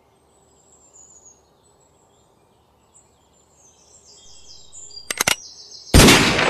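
Faint birds chirping over quiet outdoor air. A few sharp clicks come about five seconds in, then a sudden loud bang-like burst right at the end.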